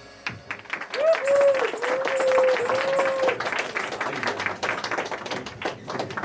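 Audience clapping right after a song ends, with one long held shout about a second in that lasts roughly two seconds.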